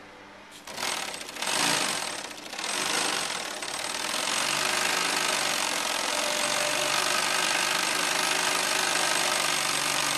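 Industrial sewing machine stitching around the brim of a straw hat, starting in three short bursts and then running steadily from about four seconds in.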